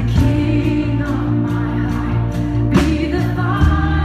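Live worship band and singers performing a contemporary Christian worship song: held chords over a steady bass line under sung vocal lines, with a sharp hit a little under three seconds in.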